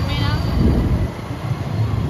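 Road noise from riding through city traffic: a low, steady rumble of engines and tyres with wind on the microphone.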